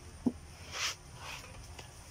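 Handling noise from the phone as it is moved: one sharp tap about a quarter second in, then a brief rustle just before the one-second mark and a fainter one after it, over a low steady hum.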